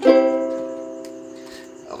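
A ukulele chord strummed once and left to ring, fading away over about two seconds.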